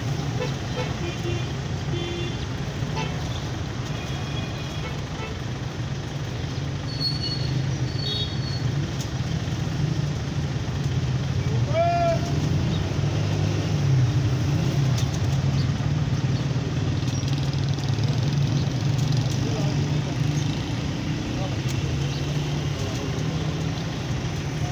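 A steady outdoor background of engine hum and voices. Several short, high chirps come in the first five seconds and again a few seconds later. About halfway through there is one short tone that rises and falls.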